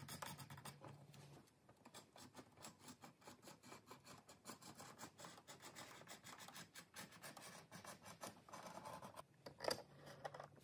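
A knife blade cutting through thick 3 to 3.5 mm veg-tanned leather: a faint, continuous run of short scratching strokes as the blade is drawn along the line, with one louder stroke near the end.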